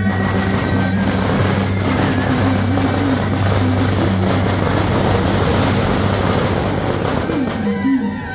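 A string of firecrackers going off in a continuous rapid crackle, over loud amplified music with a steady bass note; the crackling stops abruptly near the end, leaving the music.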